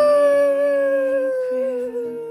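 A long 'hyuu' whistle tone: one clear pitch that swoops up at the start, then sinks slowly, with steady lower notes underneath.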